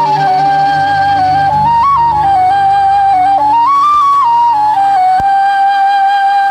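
Solo flute playing a slow melody of long held notes. It steps up higher twice and settles back, over a soft sustained orchestral accompaniment.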